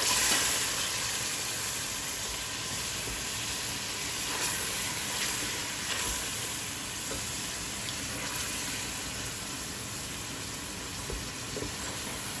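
Fried onions and mashed tomatoes sizzling in hot oil in a pot while a wooden spoon stirs them, with faint scrapes of the spoon. The sizzle is loudest at the start and settles into a steady hiss.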